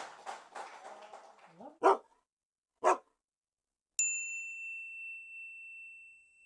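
A dog barks twice, about a second apart, as the live room sound fades out. Then a single bright, bell-like ding rings out and slowly dies away.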